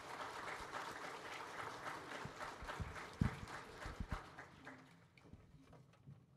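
Small congregation applauding, the clapping thinning out and dying away over about five seconds, with a sharp low thump about three seconds in as the loudest sound.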